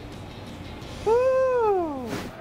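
A single drawn-out voice-like call starting about a second in, rising and then falling in pitch over about a second.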